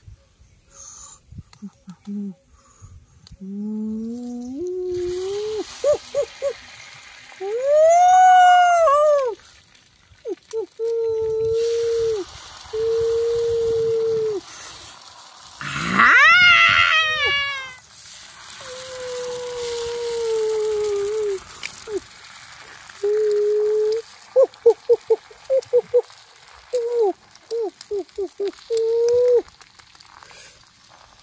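A man's wordless vocalizing: rising hums, long held 'mmm' tones, and two loud exclaimed 'ooh's about 8 and 16 seconds in, with quick short hums near the end. Underneath from about 5 seconds in there is a steady sizzle of eggs frying on a hot plate over a fire.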